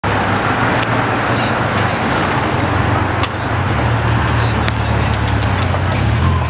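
Street traffic: a motorcycle and cars passing slowly, with a steady low rumble and a few faint clicks.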